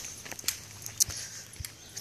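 Footsteps on a dirt road: a few soft scuffs about half a second apart over a faint outdoor background.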